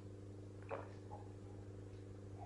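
A person gulping down thick aloe vera gel: one sharp swallow a little before a second in, then a softer one, over a steady low hum.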